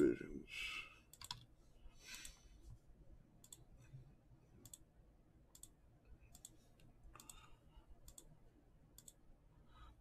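Faint clicks of a computer mouse button, spaced roughly a second apart, as a web page's button is clicked over and over, with a few soft rustles in between.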